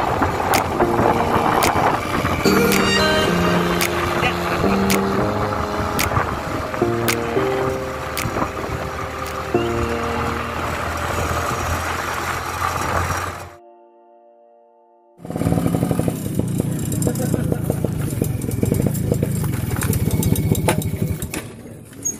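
Background music with a melody and a steady beat, which drops out about two-thirds of the way in. After a short silence, a small motorcycle engine runs for the last few seconds.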